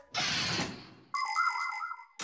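Cartoon transition sound effects: a rushing whoosh that fades away over about a second, then a short chiming jingle with a warbling tone, the sting that opens an explainer segment.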